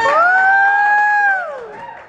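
A long high "woo" whoop from an audience member as the music cuts off: the voice sweeps up, holds one high note for about a second and a half, then slides down and fades.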